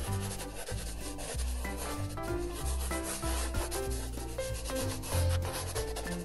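Background music with a bass line moving in steps, under the scratchy rubbing of a paintbrush's bristles stroking across paper.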